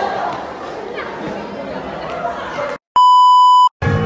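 Murmur of guests chatting in a large room, then a sudden cut and a loud, steady electronic beep lasting under a second near the end, followed immediately by music starting.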